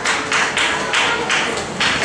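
Hand claps, about six sharp claps over two seconds at an uneven, roughly rhythmic pace.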